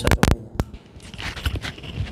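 A few loud clicks as a lavalier microphone's plug is pushed into a Saramonic Blink 500 B2 wireless transmitter, then faint rustling and scraping of the mic cable and transmitter being handled.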